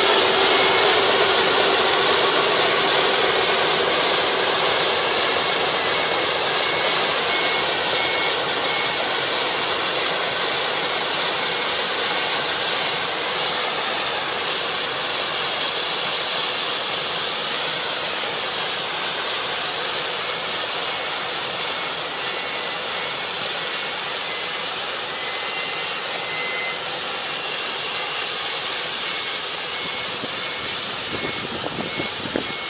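Kubota ER470 combine harvester running as it moves off through standing rice. A steady diesel engine and threshing-machine noise grows gradually fainter as it pulls away.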